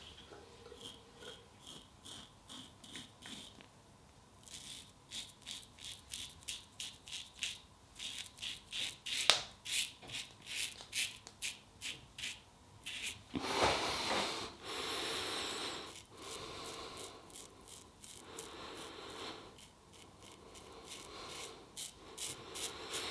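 1966 Gillette Superspeed double-edge safety razor with a new Polsilver Super Iridium blade, scraping through lathered stubble on the chin and neck in short strokes at about three a second. About two-thirds of the way through there is a longer, louder rasp.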